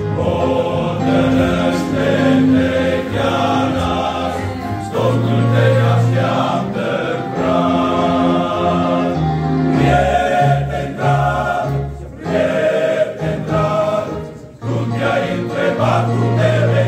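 Male choir singing in several voice parts, holding chords, with brief breaks between phrases about twelve and fourteen and a half seconds in.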